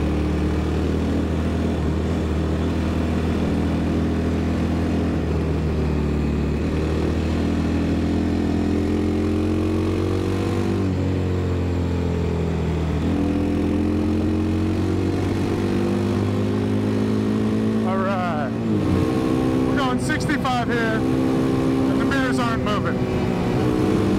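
Kawasaki KLX 300's single-cylinder four-stroke engine running at road speed under way, a steady note whose pitch dips and climbs again about halfway through as the throttle changes.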